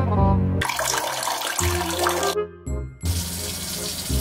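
Water poured from a plastic bottle splashing over a guava held in the hand, in two long spells, over background music.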